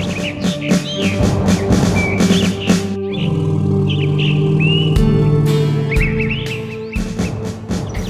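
Cartoon background music: rhythmic percussion and melody that about three seconds in changes to held low notes, with bird-like chirps over it and two low thuds about a second apart near the middle.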